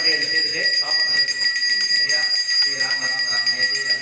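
Continuous high-pitched ringing made of several steady tones held throughout, under indistinct voices.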